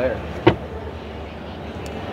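Carpeted cargo-area floor panel of an SUV let fall shut over the spare-tire well: one sharp thump about half a second in, then a steady background hum.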